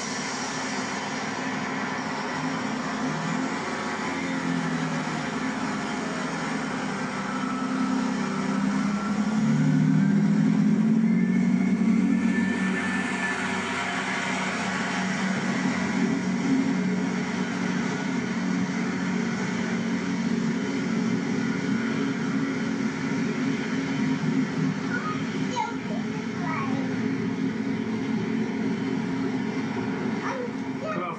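Diesel engines of a Regional Railways Class 158 multiple unit running with a steady drone. The drone grows louder and steps up in pitch about ten seconds in as the train pulls away, then holds steady as it moves off down the line.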